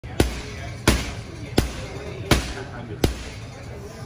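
Boxing-gloved punches landing on a heavy punching bag: five hard, evenly spaced thuds about 0.7 seconds apart, stopping about three seconds in.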